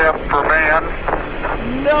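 Steady low rumble of a SpaceX Starship prototype's Raptor engine as the vehicle lifts off and climbs, with a man's excited shout over it about half a second in.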